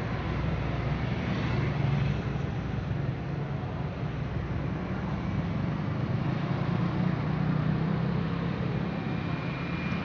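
Steady traffic noise on a busy street: cars and motorcycles passing, their engine hum swelling a little as vehicles go by.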